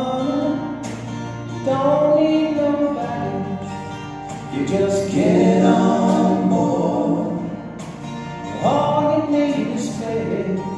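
Live acoustic gospel music: acoustic guitars played under men's voices singing slow held notes in harmony, swelling in loudness a few times.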